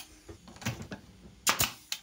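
Pneumatic pin nailer firing pins into a pine frame: a few light clacks, then two sharp shots in the second half, less than half a second apart.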